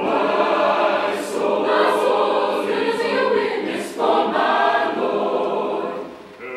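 Large mixed choir singing a gospel spiritual in full harmony, in sustained phrases with a brief break about four seconds in.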